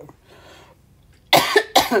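A woman with flu coughing: a faint intake of breath, then two loud coughs in quick succession a little past halfway through.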